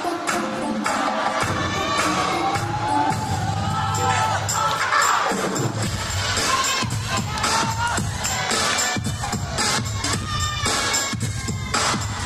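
Hip hop dance music with a beat, mixed with a crowd cheering and shouting, many of them children.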